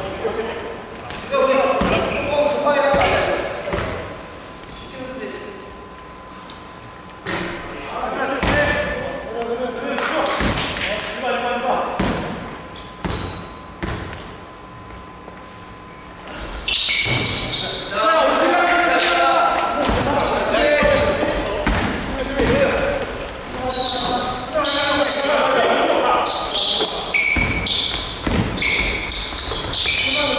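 Basketball game on a wooden gym court, echoing in the hall: the ball bouncing, with players calling out. From about halfway in it gets much louder, with shouting and many short high squeaks of sneakers on the floor as play speeds up.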